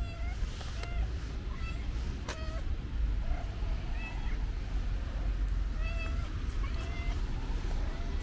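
Stray cat meowing over and over in short calls, roughly one a second, over a steady low rumble.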